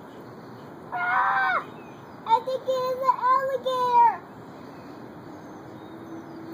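A child's high voice calling out without clear words: a short cry about a second in, then a longer wavering call from about two to four seconds in, over a steady outdoor background hiss.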